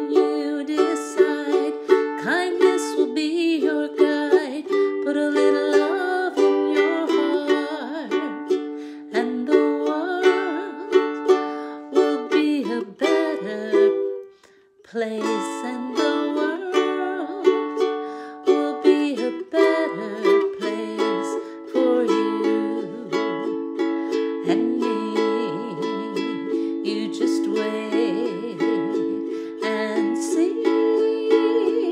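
Carbon-fibre KLOS ukulele strummed in chords, with a brief pause about fourteen seconds in before the strumming picks up again in a steady rhythm.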